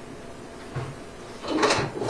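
A soft low thump a little before halfway, then a louder short scuffing noise near the end, over quiet room tone.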